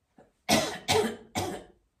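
A woman coughing three times in quick succession, each cough starting sharply and trailing off.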